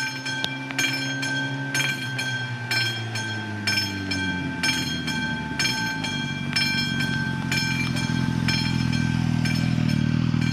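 Classic electric bell of an AŽD 71 level crossing ringing in steady single strokes, about three every two seconds, as the crossing warns of a train. Under it a diesel train's engine comes in, its note dropping from about three seconds in and growing louder as it approaches.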